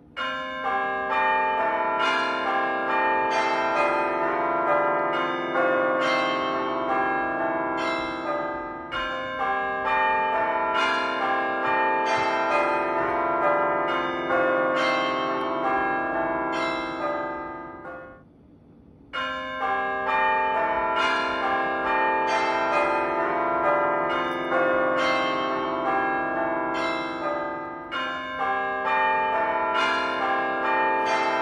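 Background music of ringing bells: a steady stream of struck bell notes. It fades out about 18 seconds in and starts again abruptly a second later.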